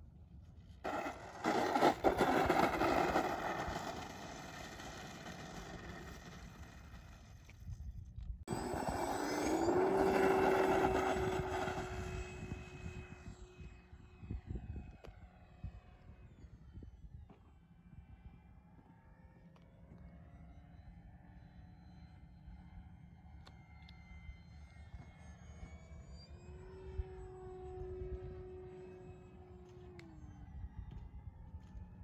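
Radio-controlled foam-board model airplane in flight: its motor and propeller give a whine that rises in pitch about ten seconds in and then holds, fading and shifting in pitch as the plane passes, with a steady whine again near the end. Heavy wind rush on the microphone covers the first dozen seconds.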